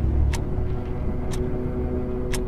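Horror-intro sound design: a low rumbling drone with steady held tones over it, cut by a sharp tick about once a second.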